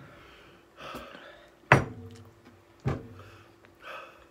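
Two sharp knocks of tableware on a wooden table, about a second apart, each with a short ring.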